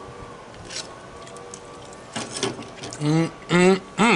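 A man making two short closed-mouth 'mm' hums near the end, the sound of someone savouring food. Before them, a few light clatters of metal tongs being handled and set down on a wire rack.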